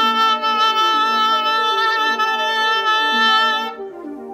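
A sustained concert A tuning note (A 440), held steady with many overtones for nearly four seconds, with lower notes moving step by step beneath it. It stops shortly before the end.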